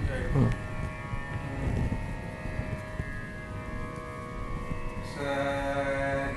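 A faint steady drone of held tones, then about five seconds in a male voice starts singing the swaras of raga Kalyani in Carnatic style, the notes bending and wavering with gamakas.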